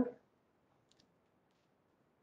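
Near silence in a small room, broken by two faint, short clicks about a second in from a marker working against a whiteboard.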